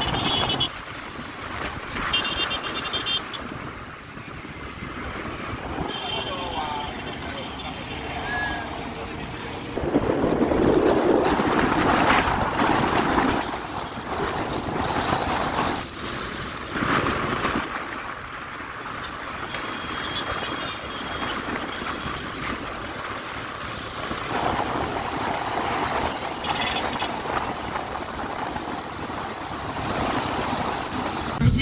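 City traffic heard from a moving car: steady road and engine noise, passing vehicles and indistinct voices, louder for a few seconds about a third of the way through.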